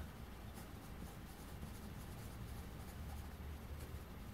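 Faint scratching of a pencil lead on paper as a word is written in small letters.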